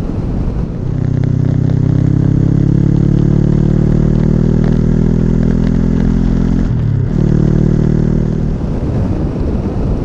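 2013 Honda CB500X's 471 cc parallel-twin engine pulling steadily through its Staintune exhaust, its note slowly rising, with a short break in the note about seven seconds in. Wind and road noise run underneath.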